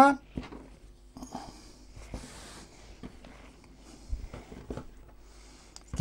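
Hands working strands of dense yeast dough on a floured wooden board as they are braided: faint rubbing and scattered light taps, with a low knock on the board about four seconds in.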